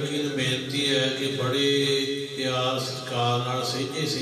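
A man chanting a Sikh prayer, holding steady notes with short breaks between phrases.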